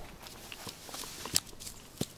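A few faint clicks and soft rustles in the grass as a small pike is landed on the bank and grabbed by hand.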